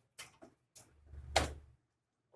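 A few short clicks and knocks of a diagnostic (POST) card being pushed and seated into a motherboard expansion slot, the firmest about one and a half seconds in.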